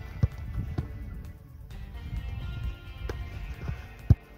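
Background music, with the sharp thud of a football being kicked about a quarter second in, followed by a few softer thumps.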